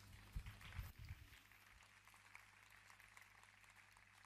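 Near silence: faint room tone with a low steady hum, and a few soft low knocks in the first second.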